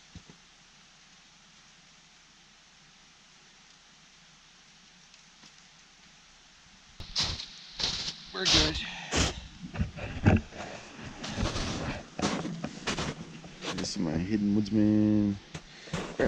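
Booted footsteps in snow, starting about seven seconds in and coming up close, roughly one step every two-thirds of a second, after a stretch of faint hiss. A short hummed voice sound comes near the end.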